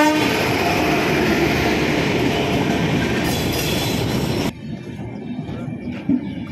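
A train passing close by, its wheels and coaches rumbling along the track, with the end of a horn blast right at the start. The train noise cuts off abruptly about four and a half seconds in, leaving a much quieter background.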